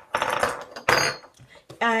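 Stainless steel tube sections of a solar lawn light's stake clinking and rattling together as they are handled, with a short metallic ring about a second in.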